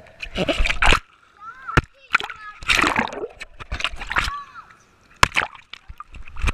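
Swimming-pool water splashing and sloshing around an action camera held underwater and at the surface, in several loud bursts about a second apart.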